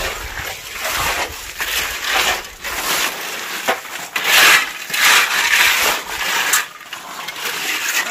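Steel shovels and hoes scraping and slopping through wet concrete as it is mixed by hand on the ground, in a run of uneven strokes that is loudest about halfway through.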